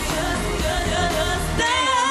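Live pop song with singing over a heavy dance beat. About one and a half seconds in the beat drops out and a long high note is held.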